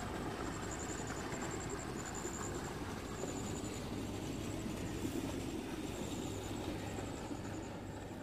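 Outdoor field ambience: a steady noise with a low hum, and an insect chirping in short, high, pulsed trills about once or twice a second. It begins to fade out near the end.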